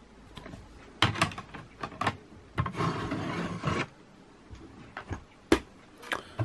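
Hard plastic PSA grading slabs being handled and stacked: several sharp clicks, a rubbing, sliding noise for about a second in the middle, and one sharp click near the end.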